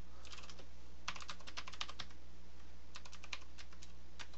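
Typing on a computer keyboard: quick runs of keystrokes in three short bursts with brief pauses between them, over a steady low hum.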